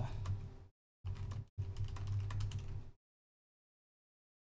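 Typing on a computer keyboard: quick runs of key clicks over a low hum, broken by two brief cut-outs to dead silence, and stopping sharply about three seconds in.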